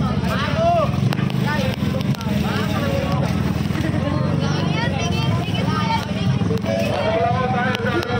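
A roadside crowd talking, several voices overlapping at once, over a steady low rumble.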